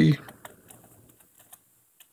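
Computer keyboard typing: a quick, uneven run of light key clicks that thins out after about a second and a half.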